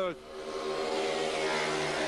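Speedway motorcycles' single-cylinder engines running at race speed as the riders circle the track, heard as a steady, even-pitched drone over a wash of track and crowd noise.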